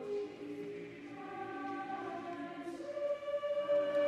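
Church choir singing a slow anthem in parts, with long held chords that move from one to the next.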